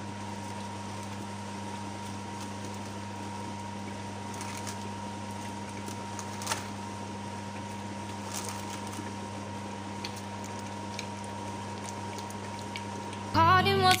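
Steady low hum with a thin high tone from the electric hob heating the stew pot, with a few light knocks as fried fish pieces are handled. Music with singing comes in just before the end.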